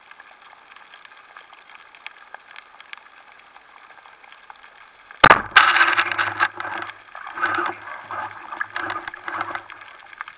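Underwater shot of an Axinos 'Black Death' wooden roller speargun: a sudden loud crack about five seconds in as the bands release and the shaft fires, heard after a stretch of faint water noise with small clicks. The shot is followed by several seconds of loud, irregular clattering and water noise.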